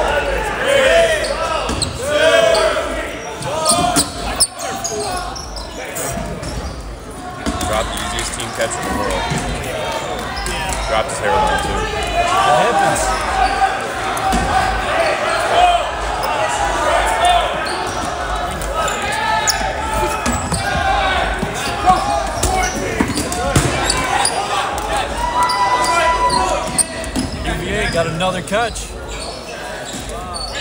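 Voices and shouts of players echoing in a large gymnasium, with occasional sharp thuds of dodgeballs striking the hardwood floor.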